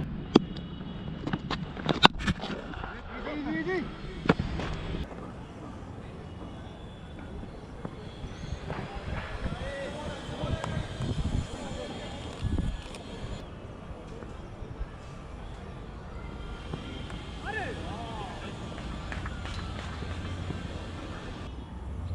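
Cricket players' shouts and calls across an open field, scattered and short, over a steady outdoor hiss, with two sharp cracks in the first couple of seconds.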